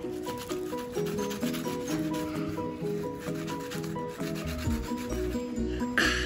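Light rubbing as a child rolls a lump of beaded foam modelling dough between his palms, over background music with a simple repeating melody. A bass beat joins the music about four and a half seconds in.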